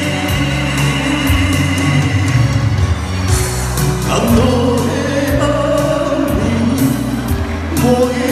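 Amplified singing into microphones over a pop backing track with a steady beat and bass line.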